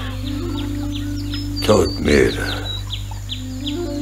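Soft background music of steady held low tones, with short high falling chirps repeating about twice a second over it and a brief voice about two seconds in.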